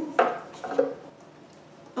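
A violin and tools being handled on a wooden workbench: one sharp knock just after the start, a few fainter knocks and rubs, then quiet.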